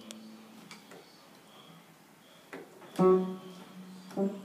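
Upright piano keys struck at random by a toddler's hands: a few soft scattered notes, then a loud cluster of notes about three seconds in that rings on.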